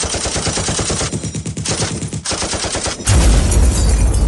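Rapid automatic gunfire sound effect, with a short break a little after two seconds in, then a sudden heavy low boom about three seconds in that rumbles on.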